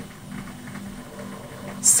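A gap between a woman's spoken sentences, holding only a faint steady hum of the recording, until a hissing 's' starts her next word just before the end.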